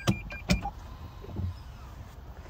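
Toyota Camry hybrid's in-cabin reverse warning, a rapid repeating high beep, which stops about half a second in as the car is shifted from reverse to park. Two sharp clicks come over the end of the beeping, followed by a softer knock.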